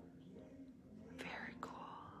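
Faint instrumental background music playing softly with sustained notes, with a short breathy hiss about a second in followed by a small click.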